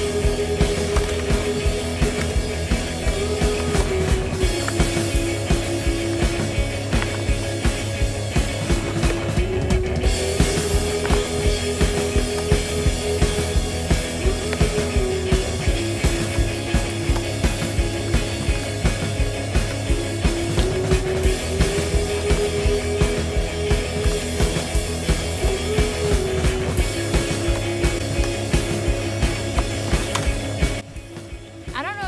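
Background music with a steady drum beat and a held melody that shifts between notes every few seconds.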